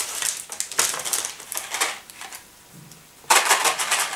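Candy packaging crinkling and rustling as wrappers and packets are handled, in irregular bursts. It goes quieter a little past halfway, then a louder burst of crinkling comes near the end.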